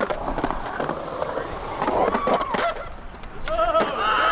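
Skateboard riding in a concrete bowl: urethane wheels rolling on concrete, with sharp clacks and knocks of the board and trucks. Near the end there is a short wavering, pitched sound.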